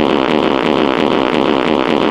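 Loud, harsh, cacophonous noise with a fast, evenly repeating warble, filling the whole sound.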